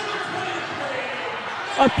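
Gymnasium crowd noise: a steady din of many voices cheering and talking at once as players and fans celebrate a game-winning buzzer-beater. A man's commentating voice comes in near the end.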